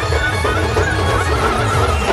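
Adivasi band music played loud through a truck-mounted speaker system: heavy bass under a wavering high lead melody.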